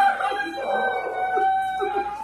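A woman's long, high-pitched wailing cry, held steady for almost two seconds and breaking off near the end, an outburst of emotion.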